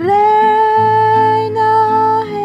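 A woman singing a Catholic devotional song, holding one long note that slides up into pitch at the start, over plucked acoustic guitar.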